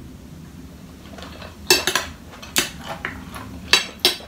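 Fork and spoon clinking against a plate while eating: quiet for the first second and a half, then three sharp clinks about a second apart, with a few lighter taps between.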